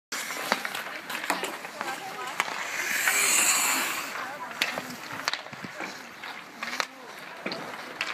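Ice hockey play: skate blades scraping and carving on the ice, loudest about three seconds in, with sharp clicks of sticks and puck scattered throughout and voices shouting across the rink.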